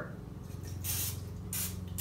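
Aerosol cooking spray (Pam) hissing from the can in two short squirts onto the nonstick plates of a waffle bowl maker, the first about a second in and the second near the end.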